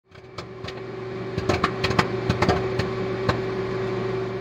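Microwave oven running with a steady hum while popcorn pops inside: scattered sharp pops, thickest between about one and a half and two and a half seconds in, then thinning out.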